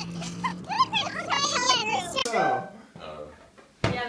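Young women's voices chattering and laughing, too jumbled to make out words, fading out about halfway. After a quiet moment there is a single sharp click just before the end.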